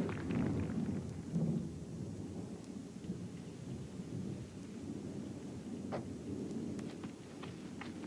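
Low thunder rumbling over steady rain, with a few faint sharp ticks near the end.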